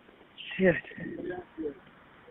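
A man's brief exclamation over a telephone line, followed by faint, low background voices.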